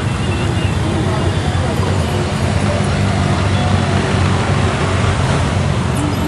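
A column of touring motorcycles riding past, their engines and exhausts blending into a steady, dense rumble.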